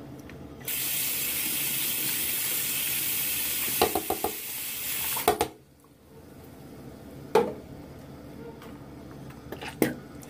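Bathroom tap running into the sink for about five seconds, then shut off abruptly. A few short knocks come during the flow, and a couple of single knocks follow later.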